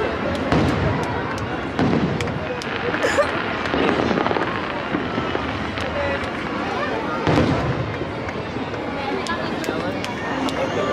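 Aerial fireworks shells bursting in a string of booms and crackles, with the strongest thumps about half a second in and again about seven seconds in.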